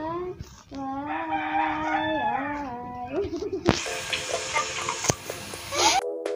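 A rooster crowing: one long drawn-out call of about two and a half seconds, its held note stepping down before it trails off. It is followed by a loud burst of hiss and crackle for the last two seconds.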